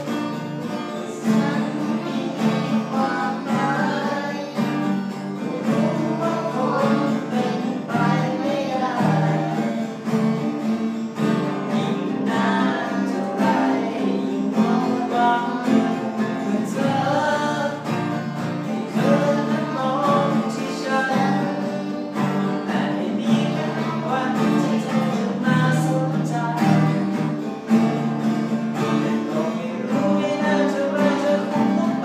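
Two acoustic guitars strummed together in an accompaniment while a man sings the melody.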